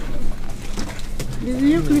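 A person's drawn-out, smooth-toned voice comes in about three quarters of the way through, over a low steady electrical hum and a few faint clicks.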